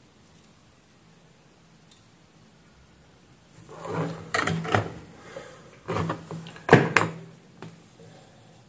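Faint hiss, then from about halfway a run of clunks and scraping knocks from objects being handled on a workbench, with two sharp knocks close together near the end.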